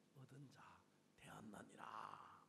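Faint speech: a man's voice heard low in two short stretches, the second louder. It is the preacher's own voice, turned down beneath the translation.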